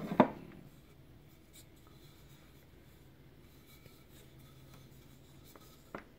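Wooden brush pots being handled: one sharp wooden knock just after the start, then faint quiet handling. A lighter knock near the end as a tall pot is set down on the table.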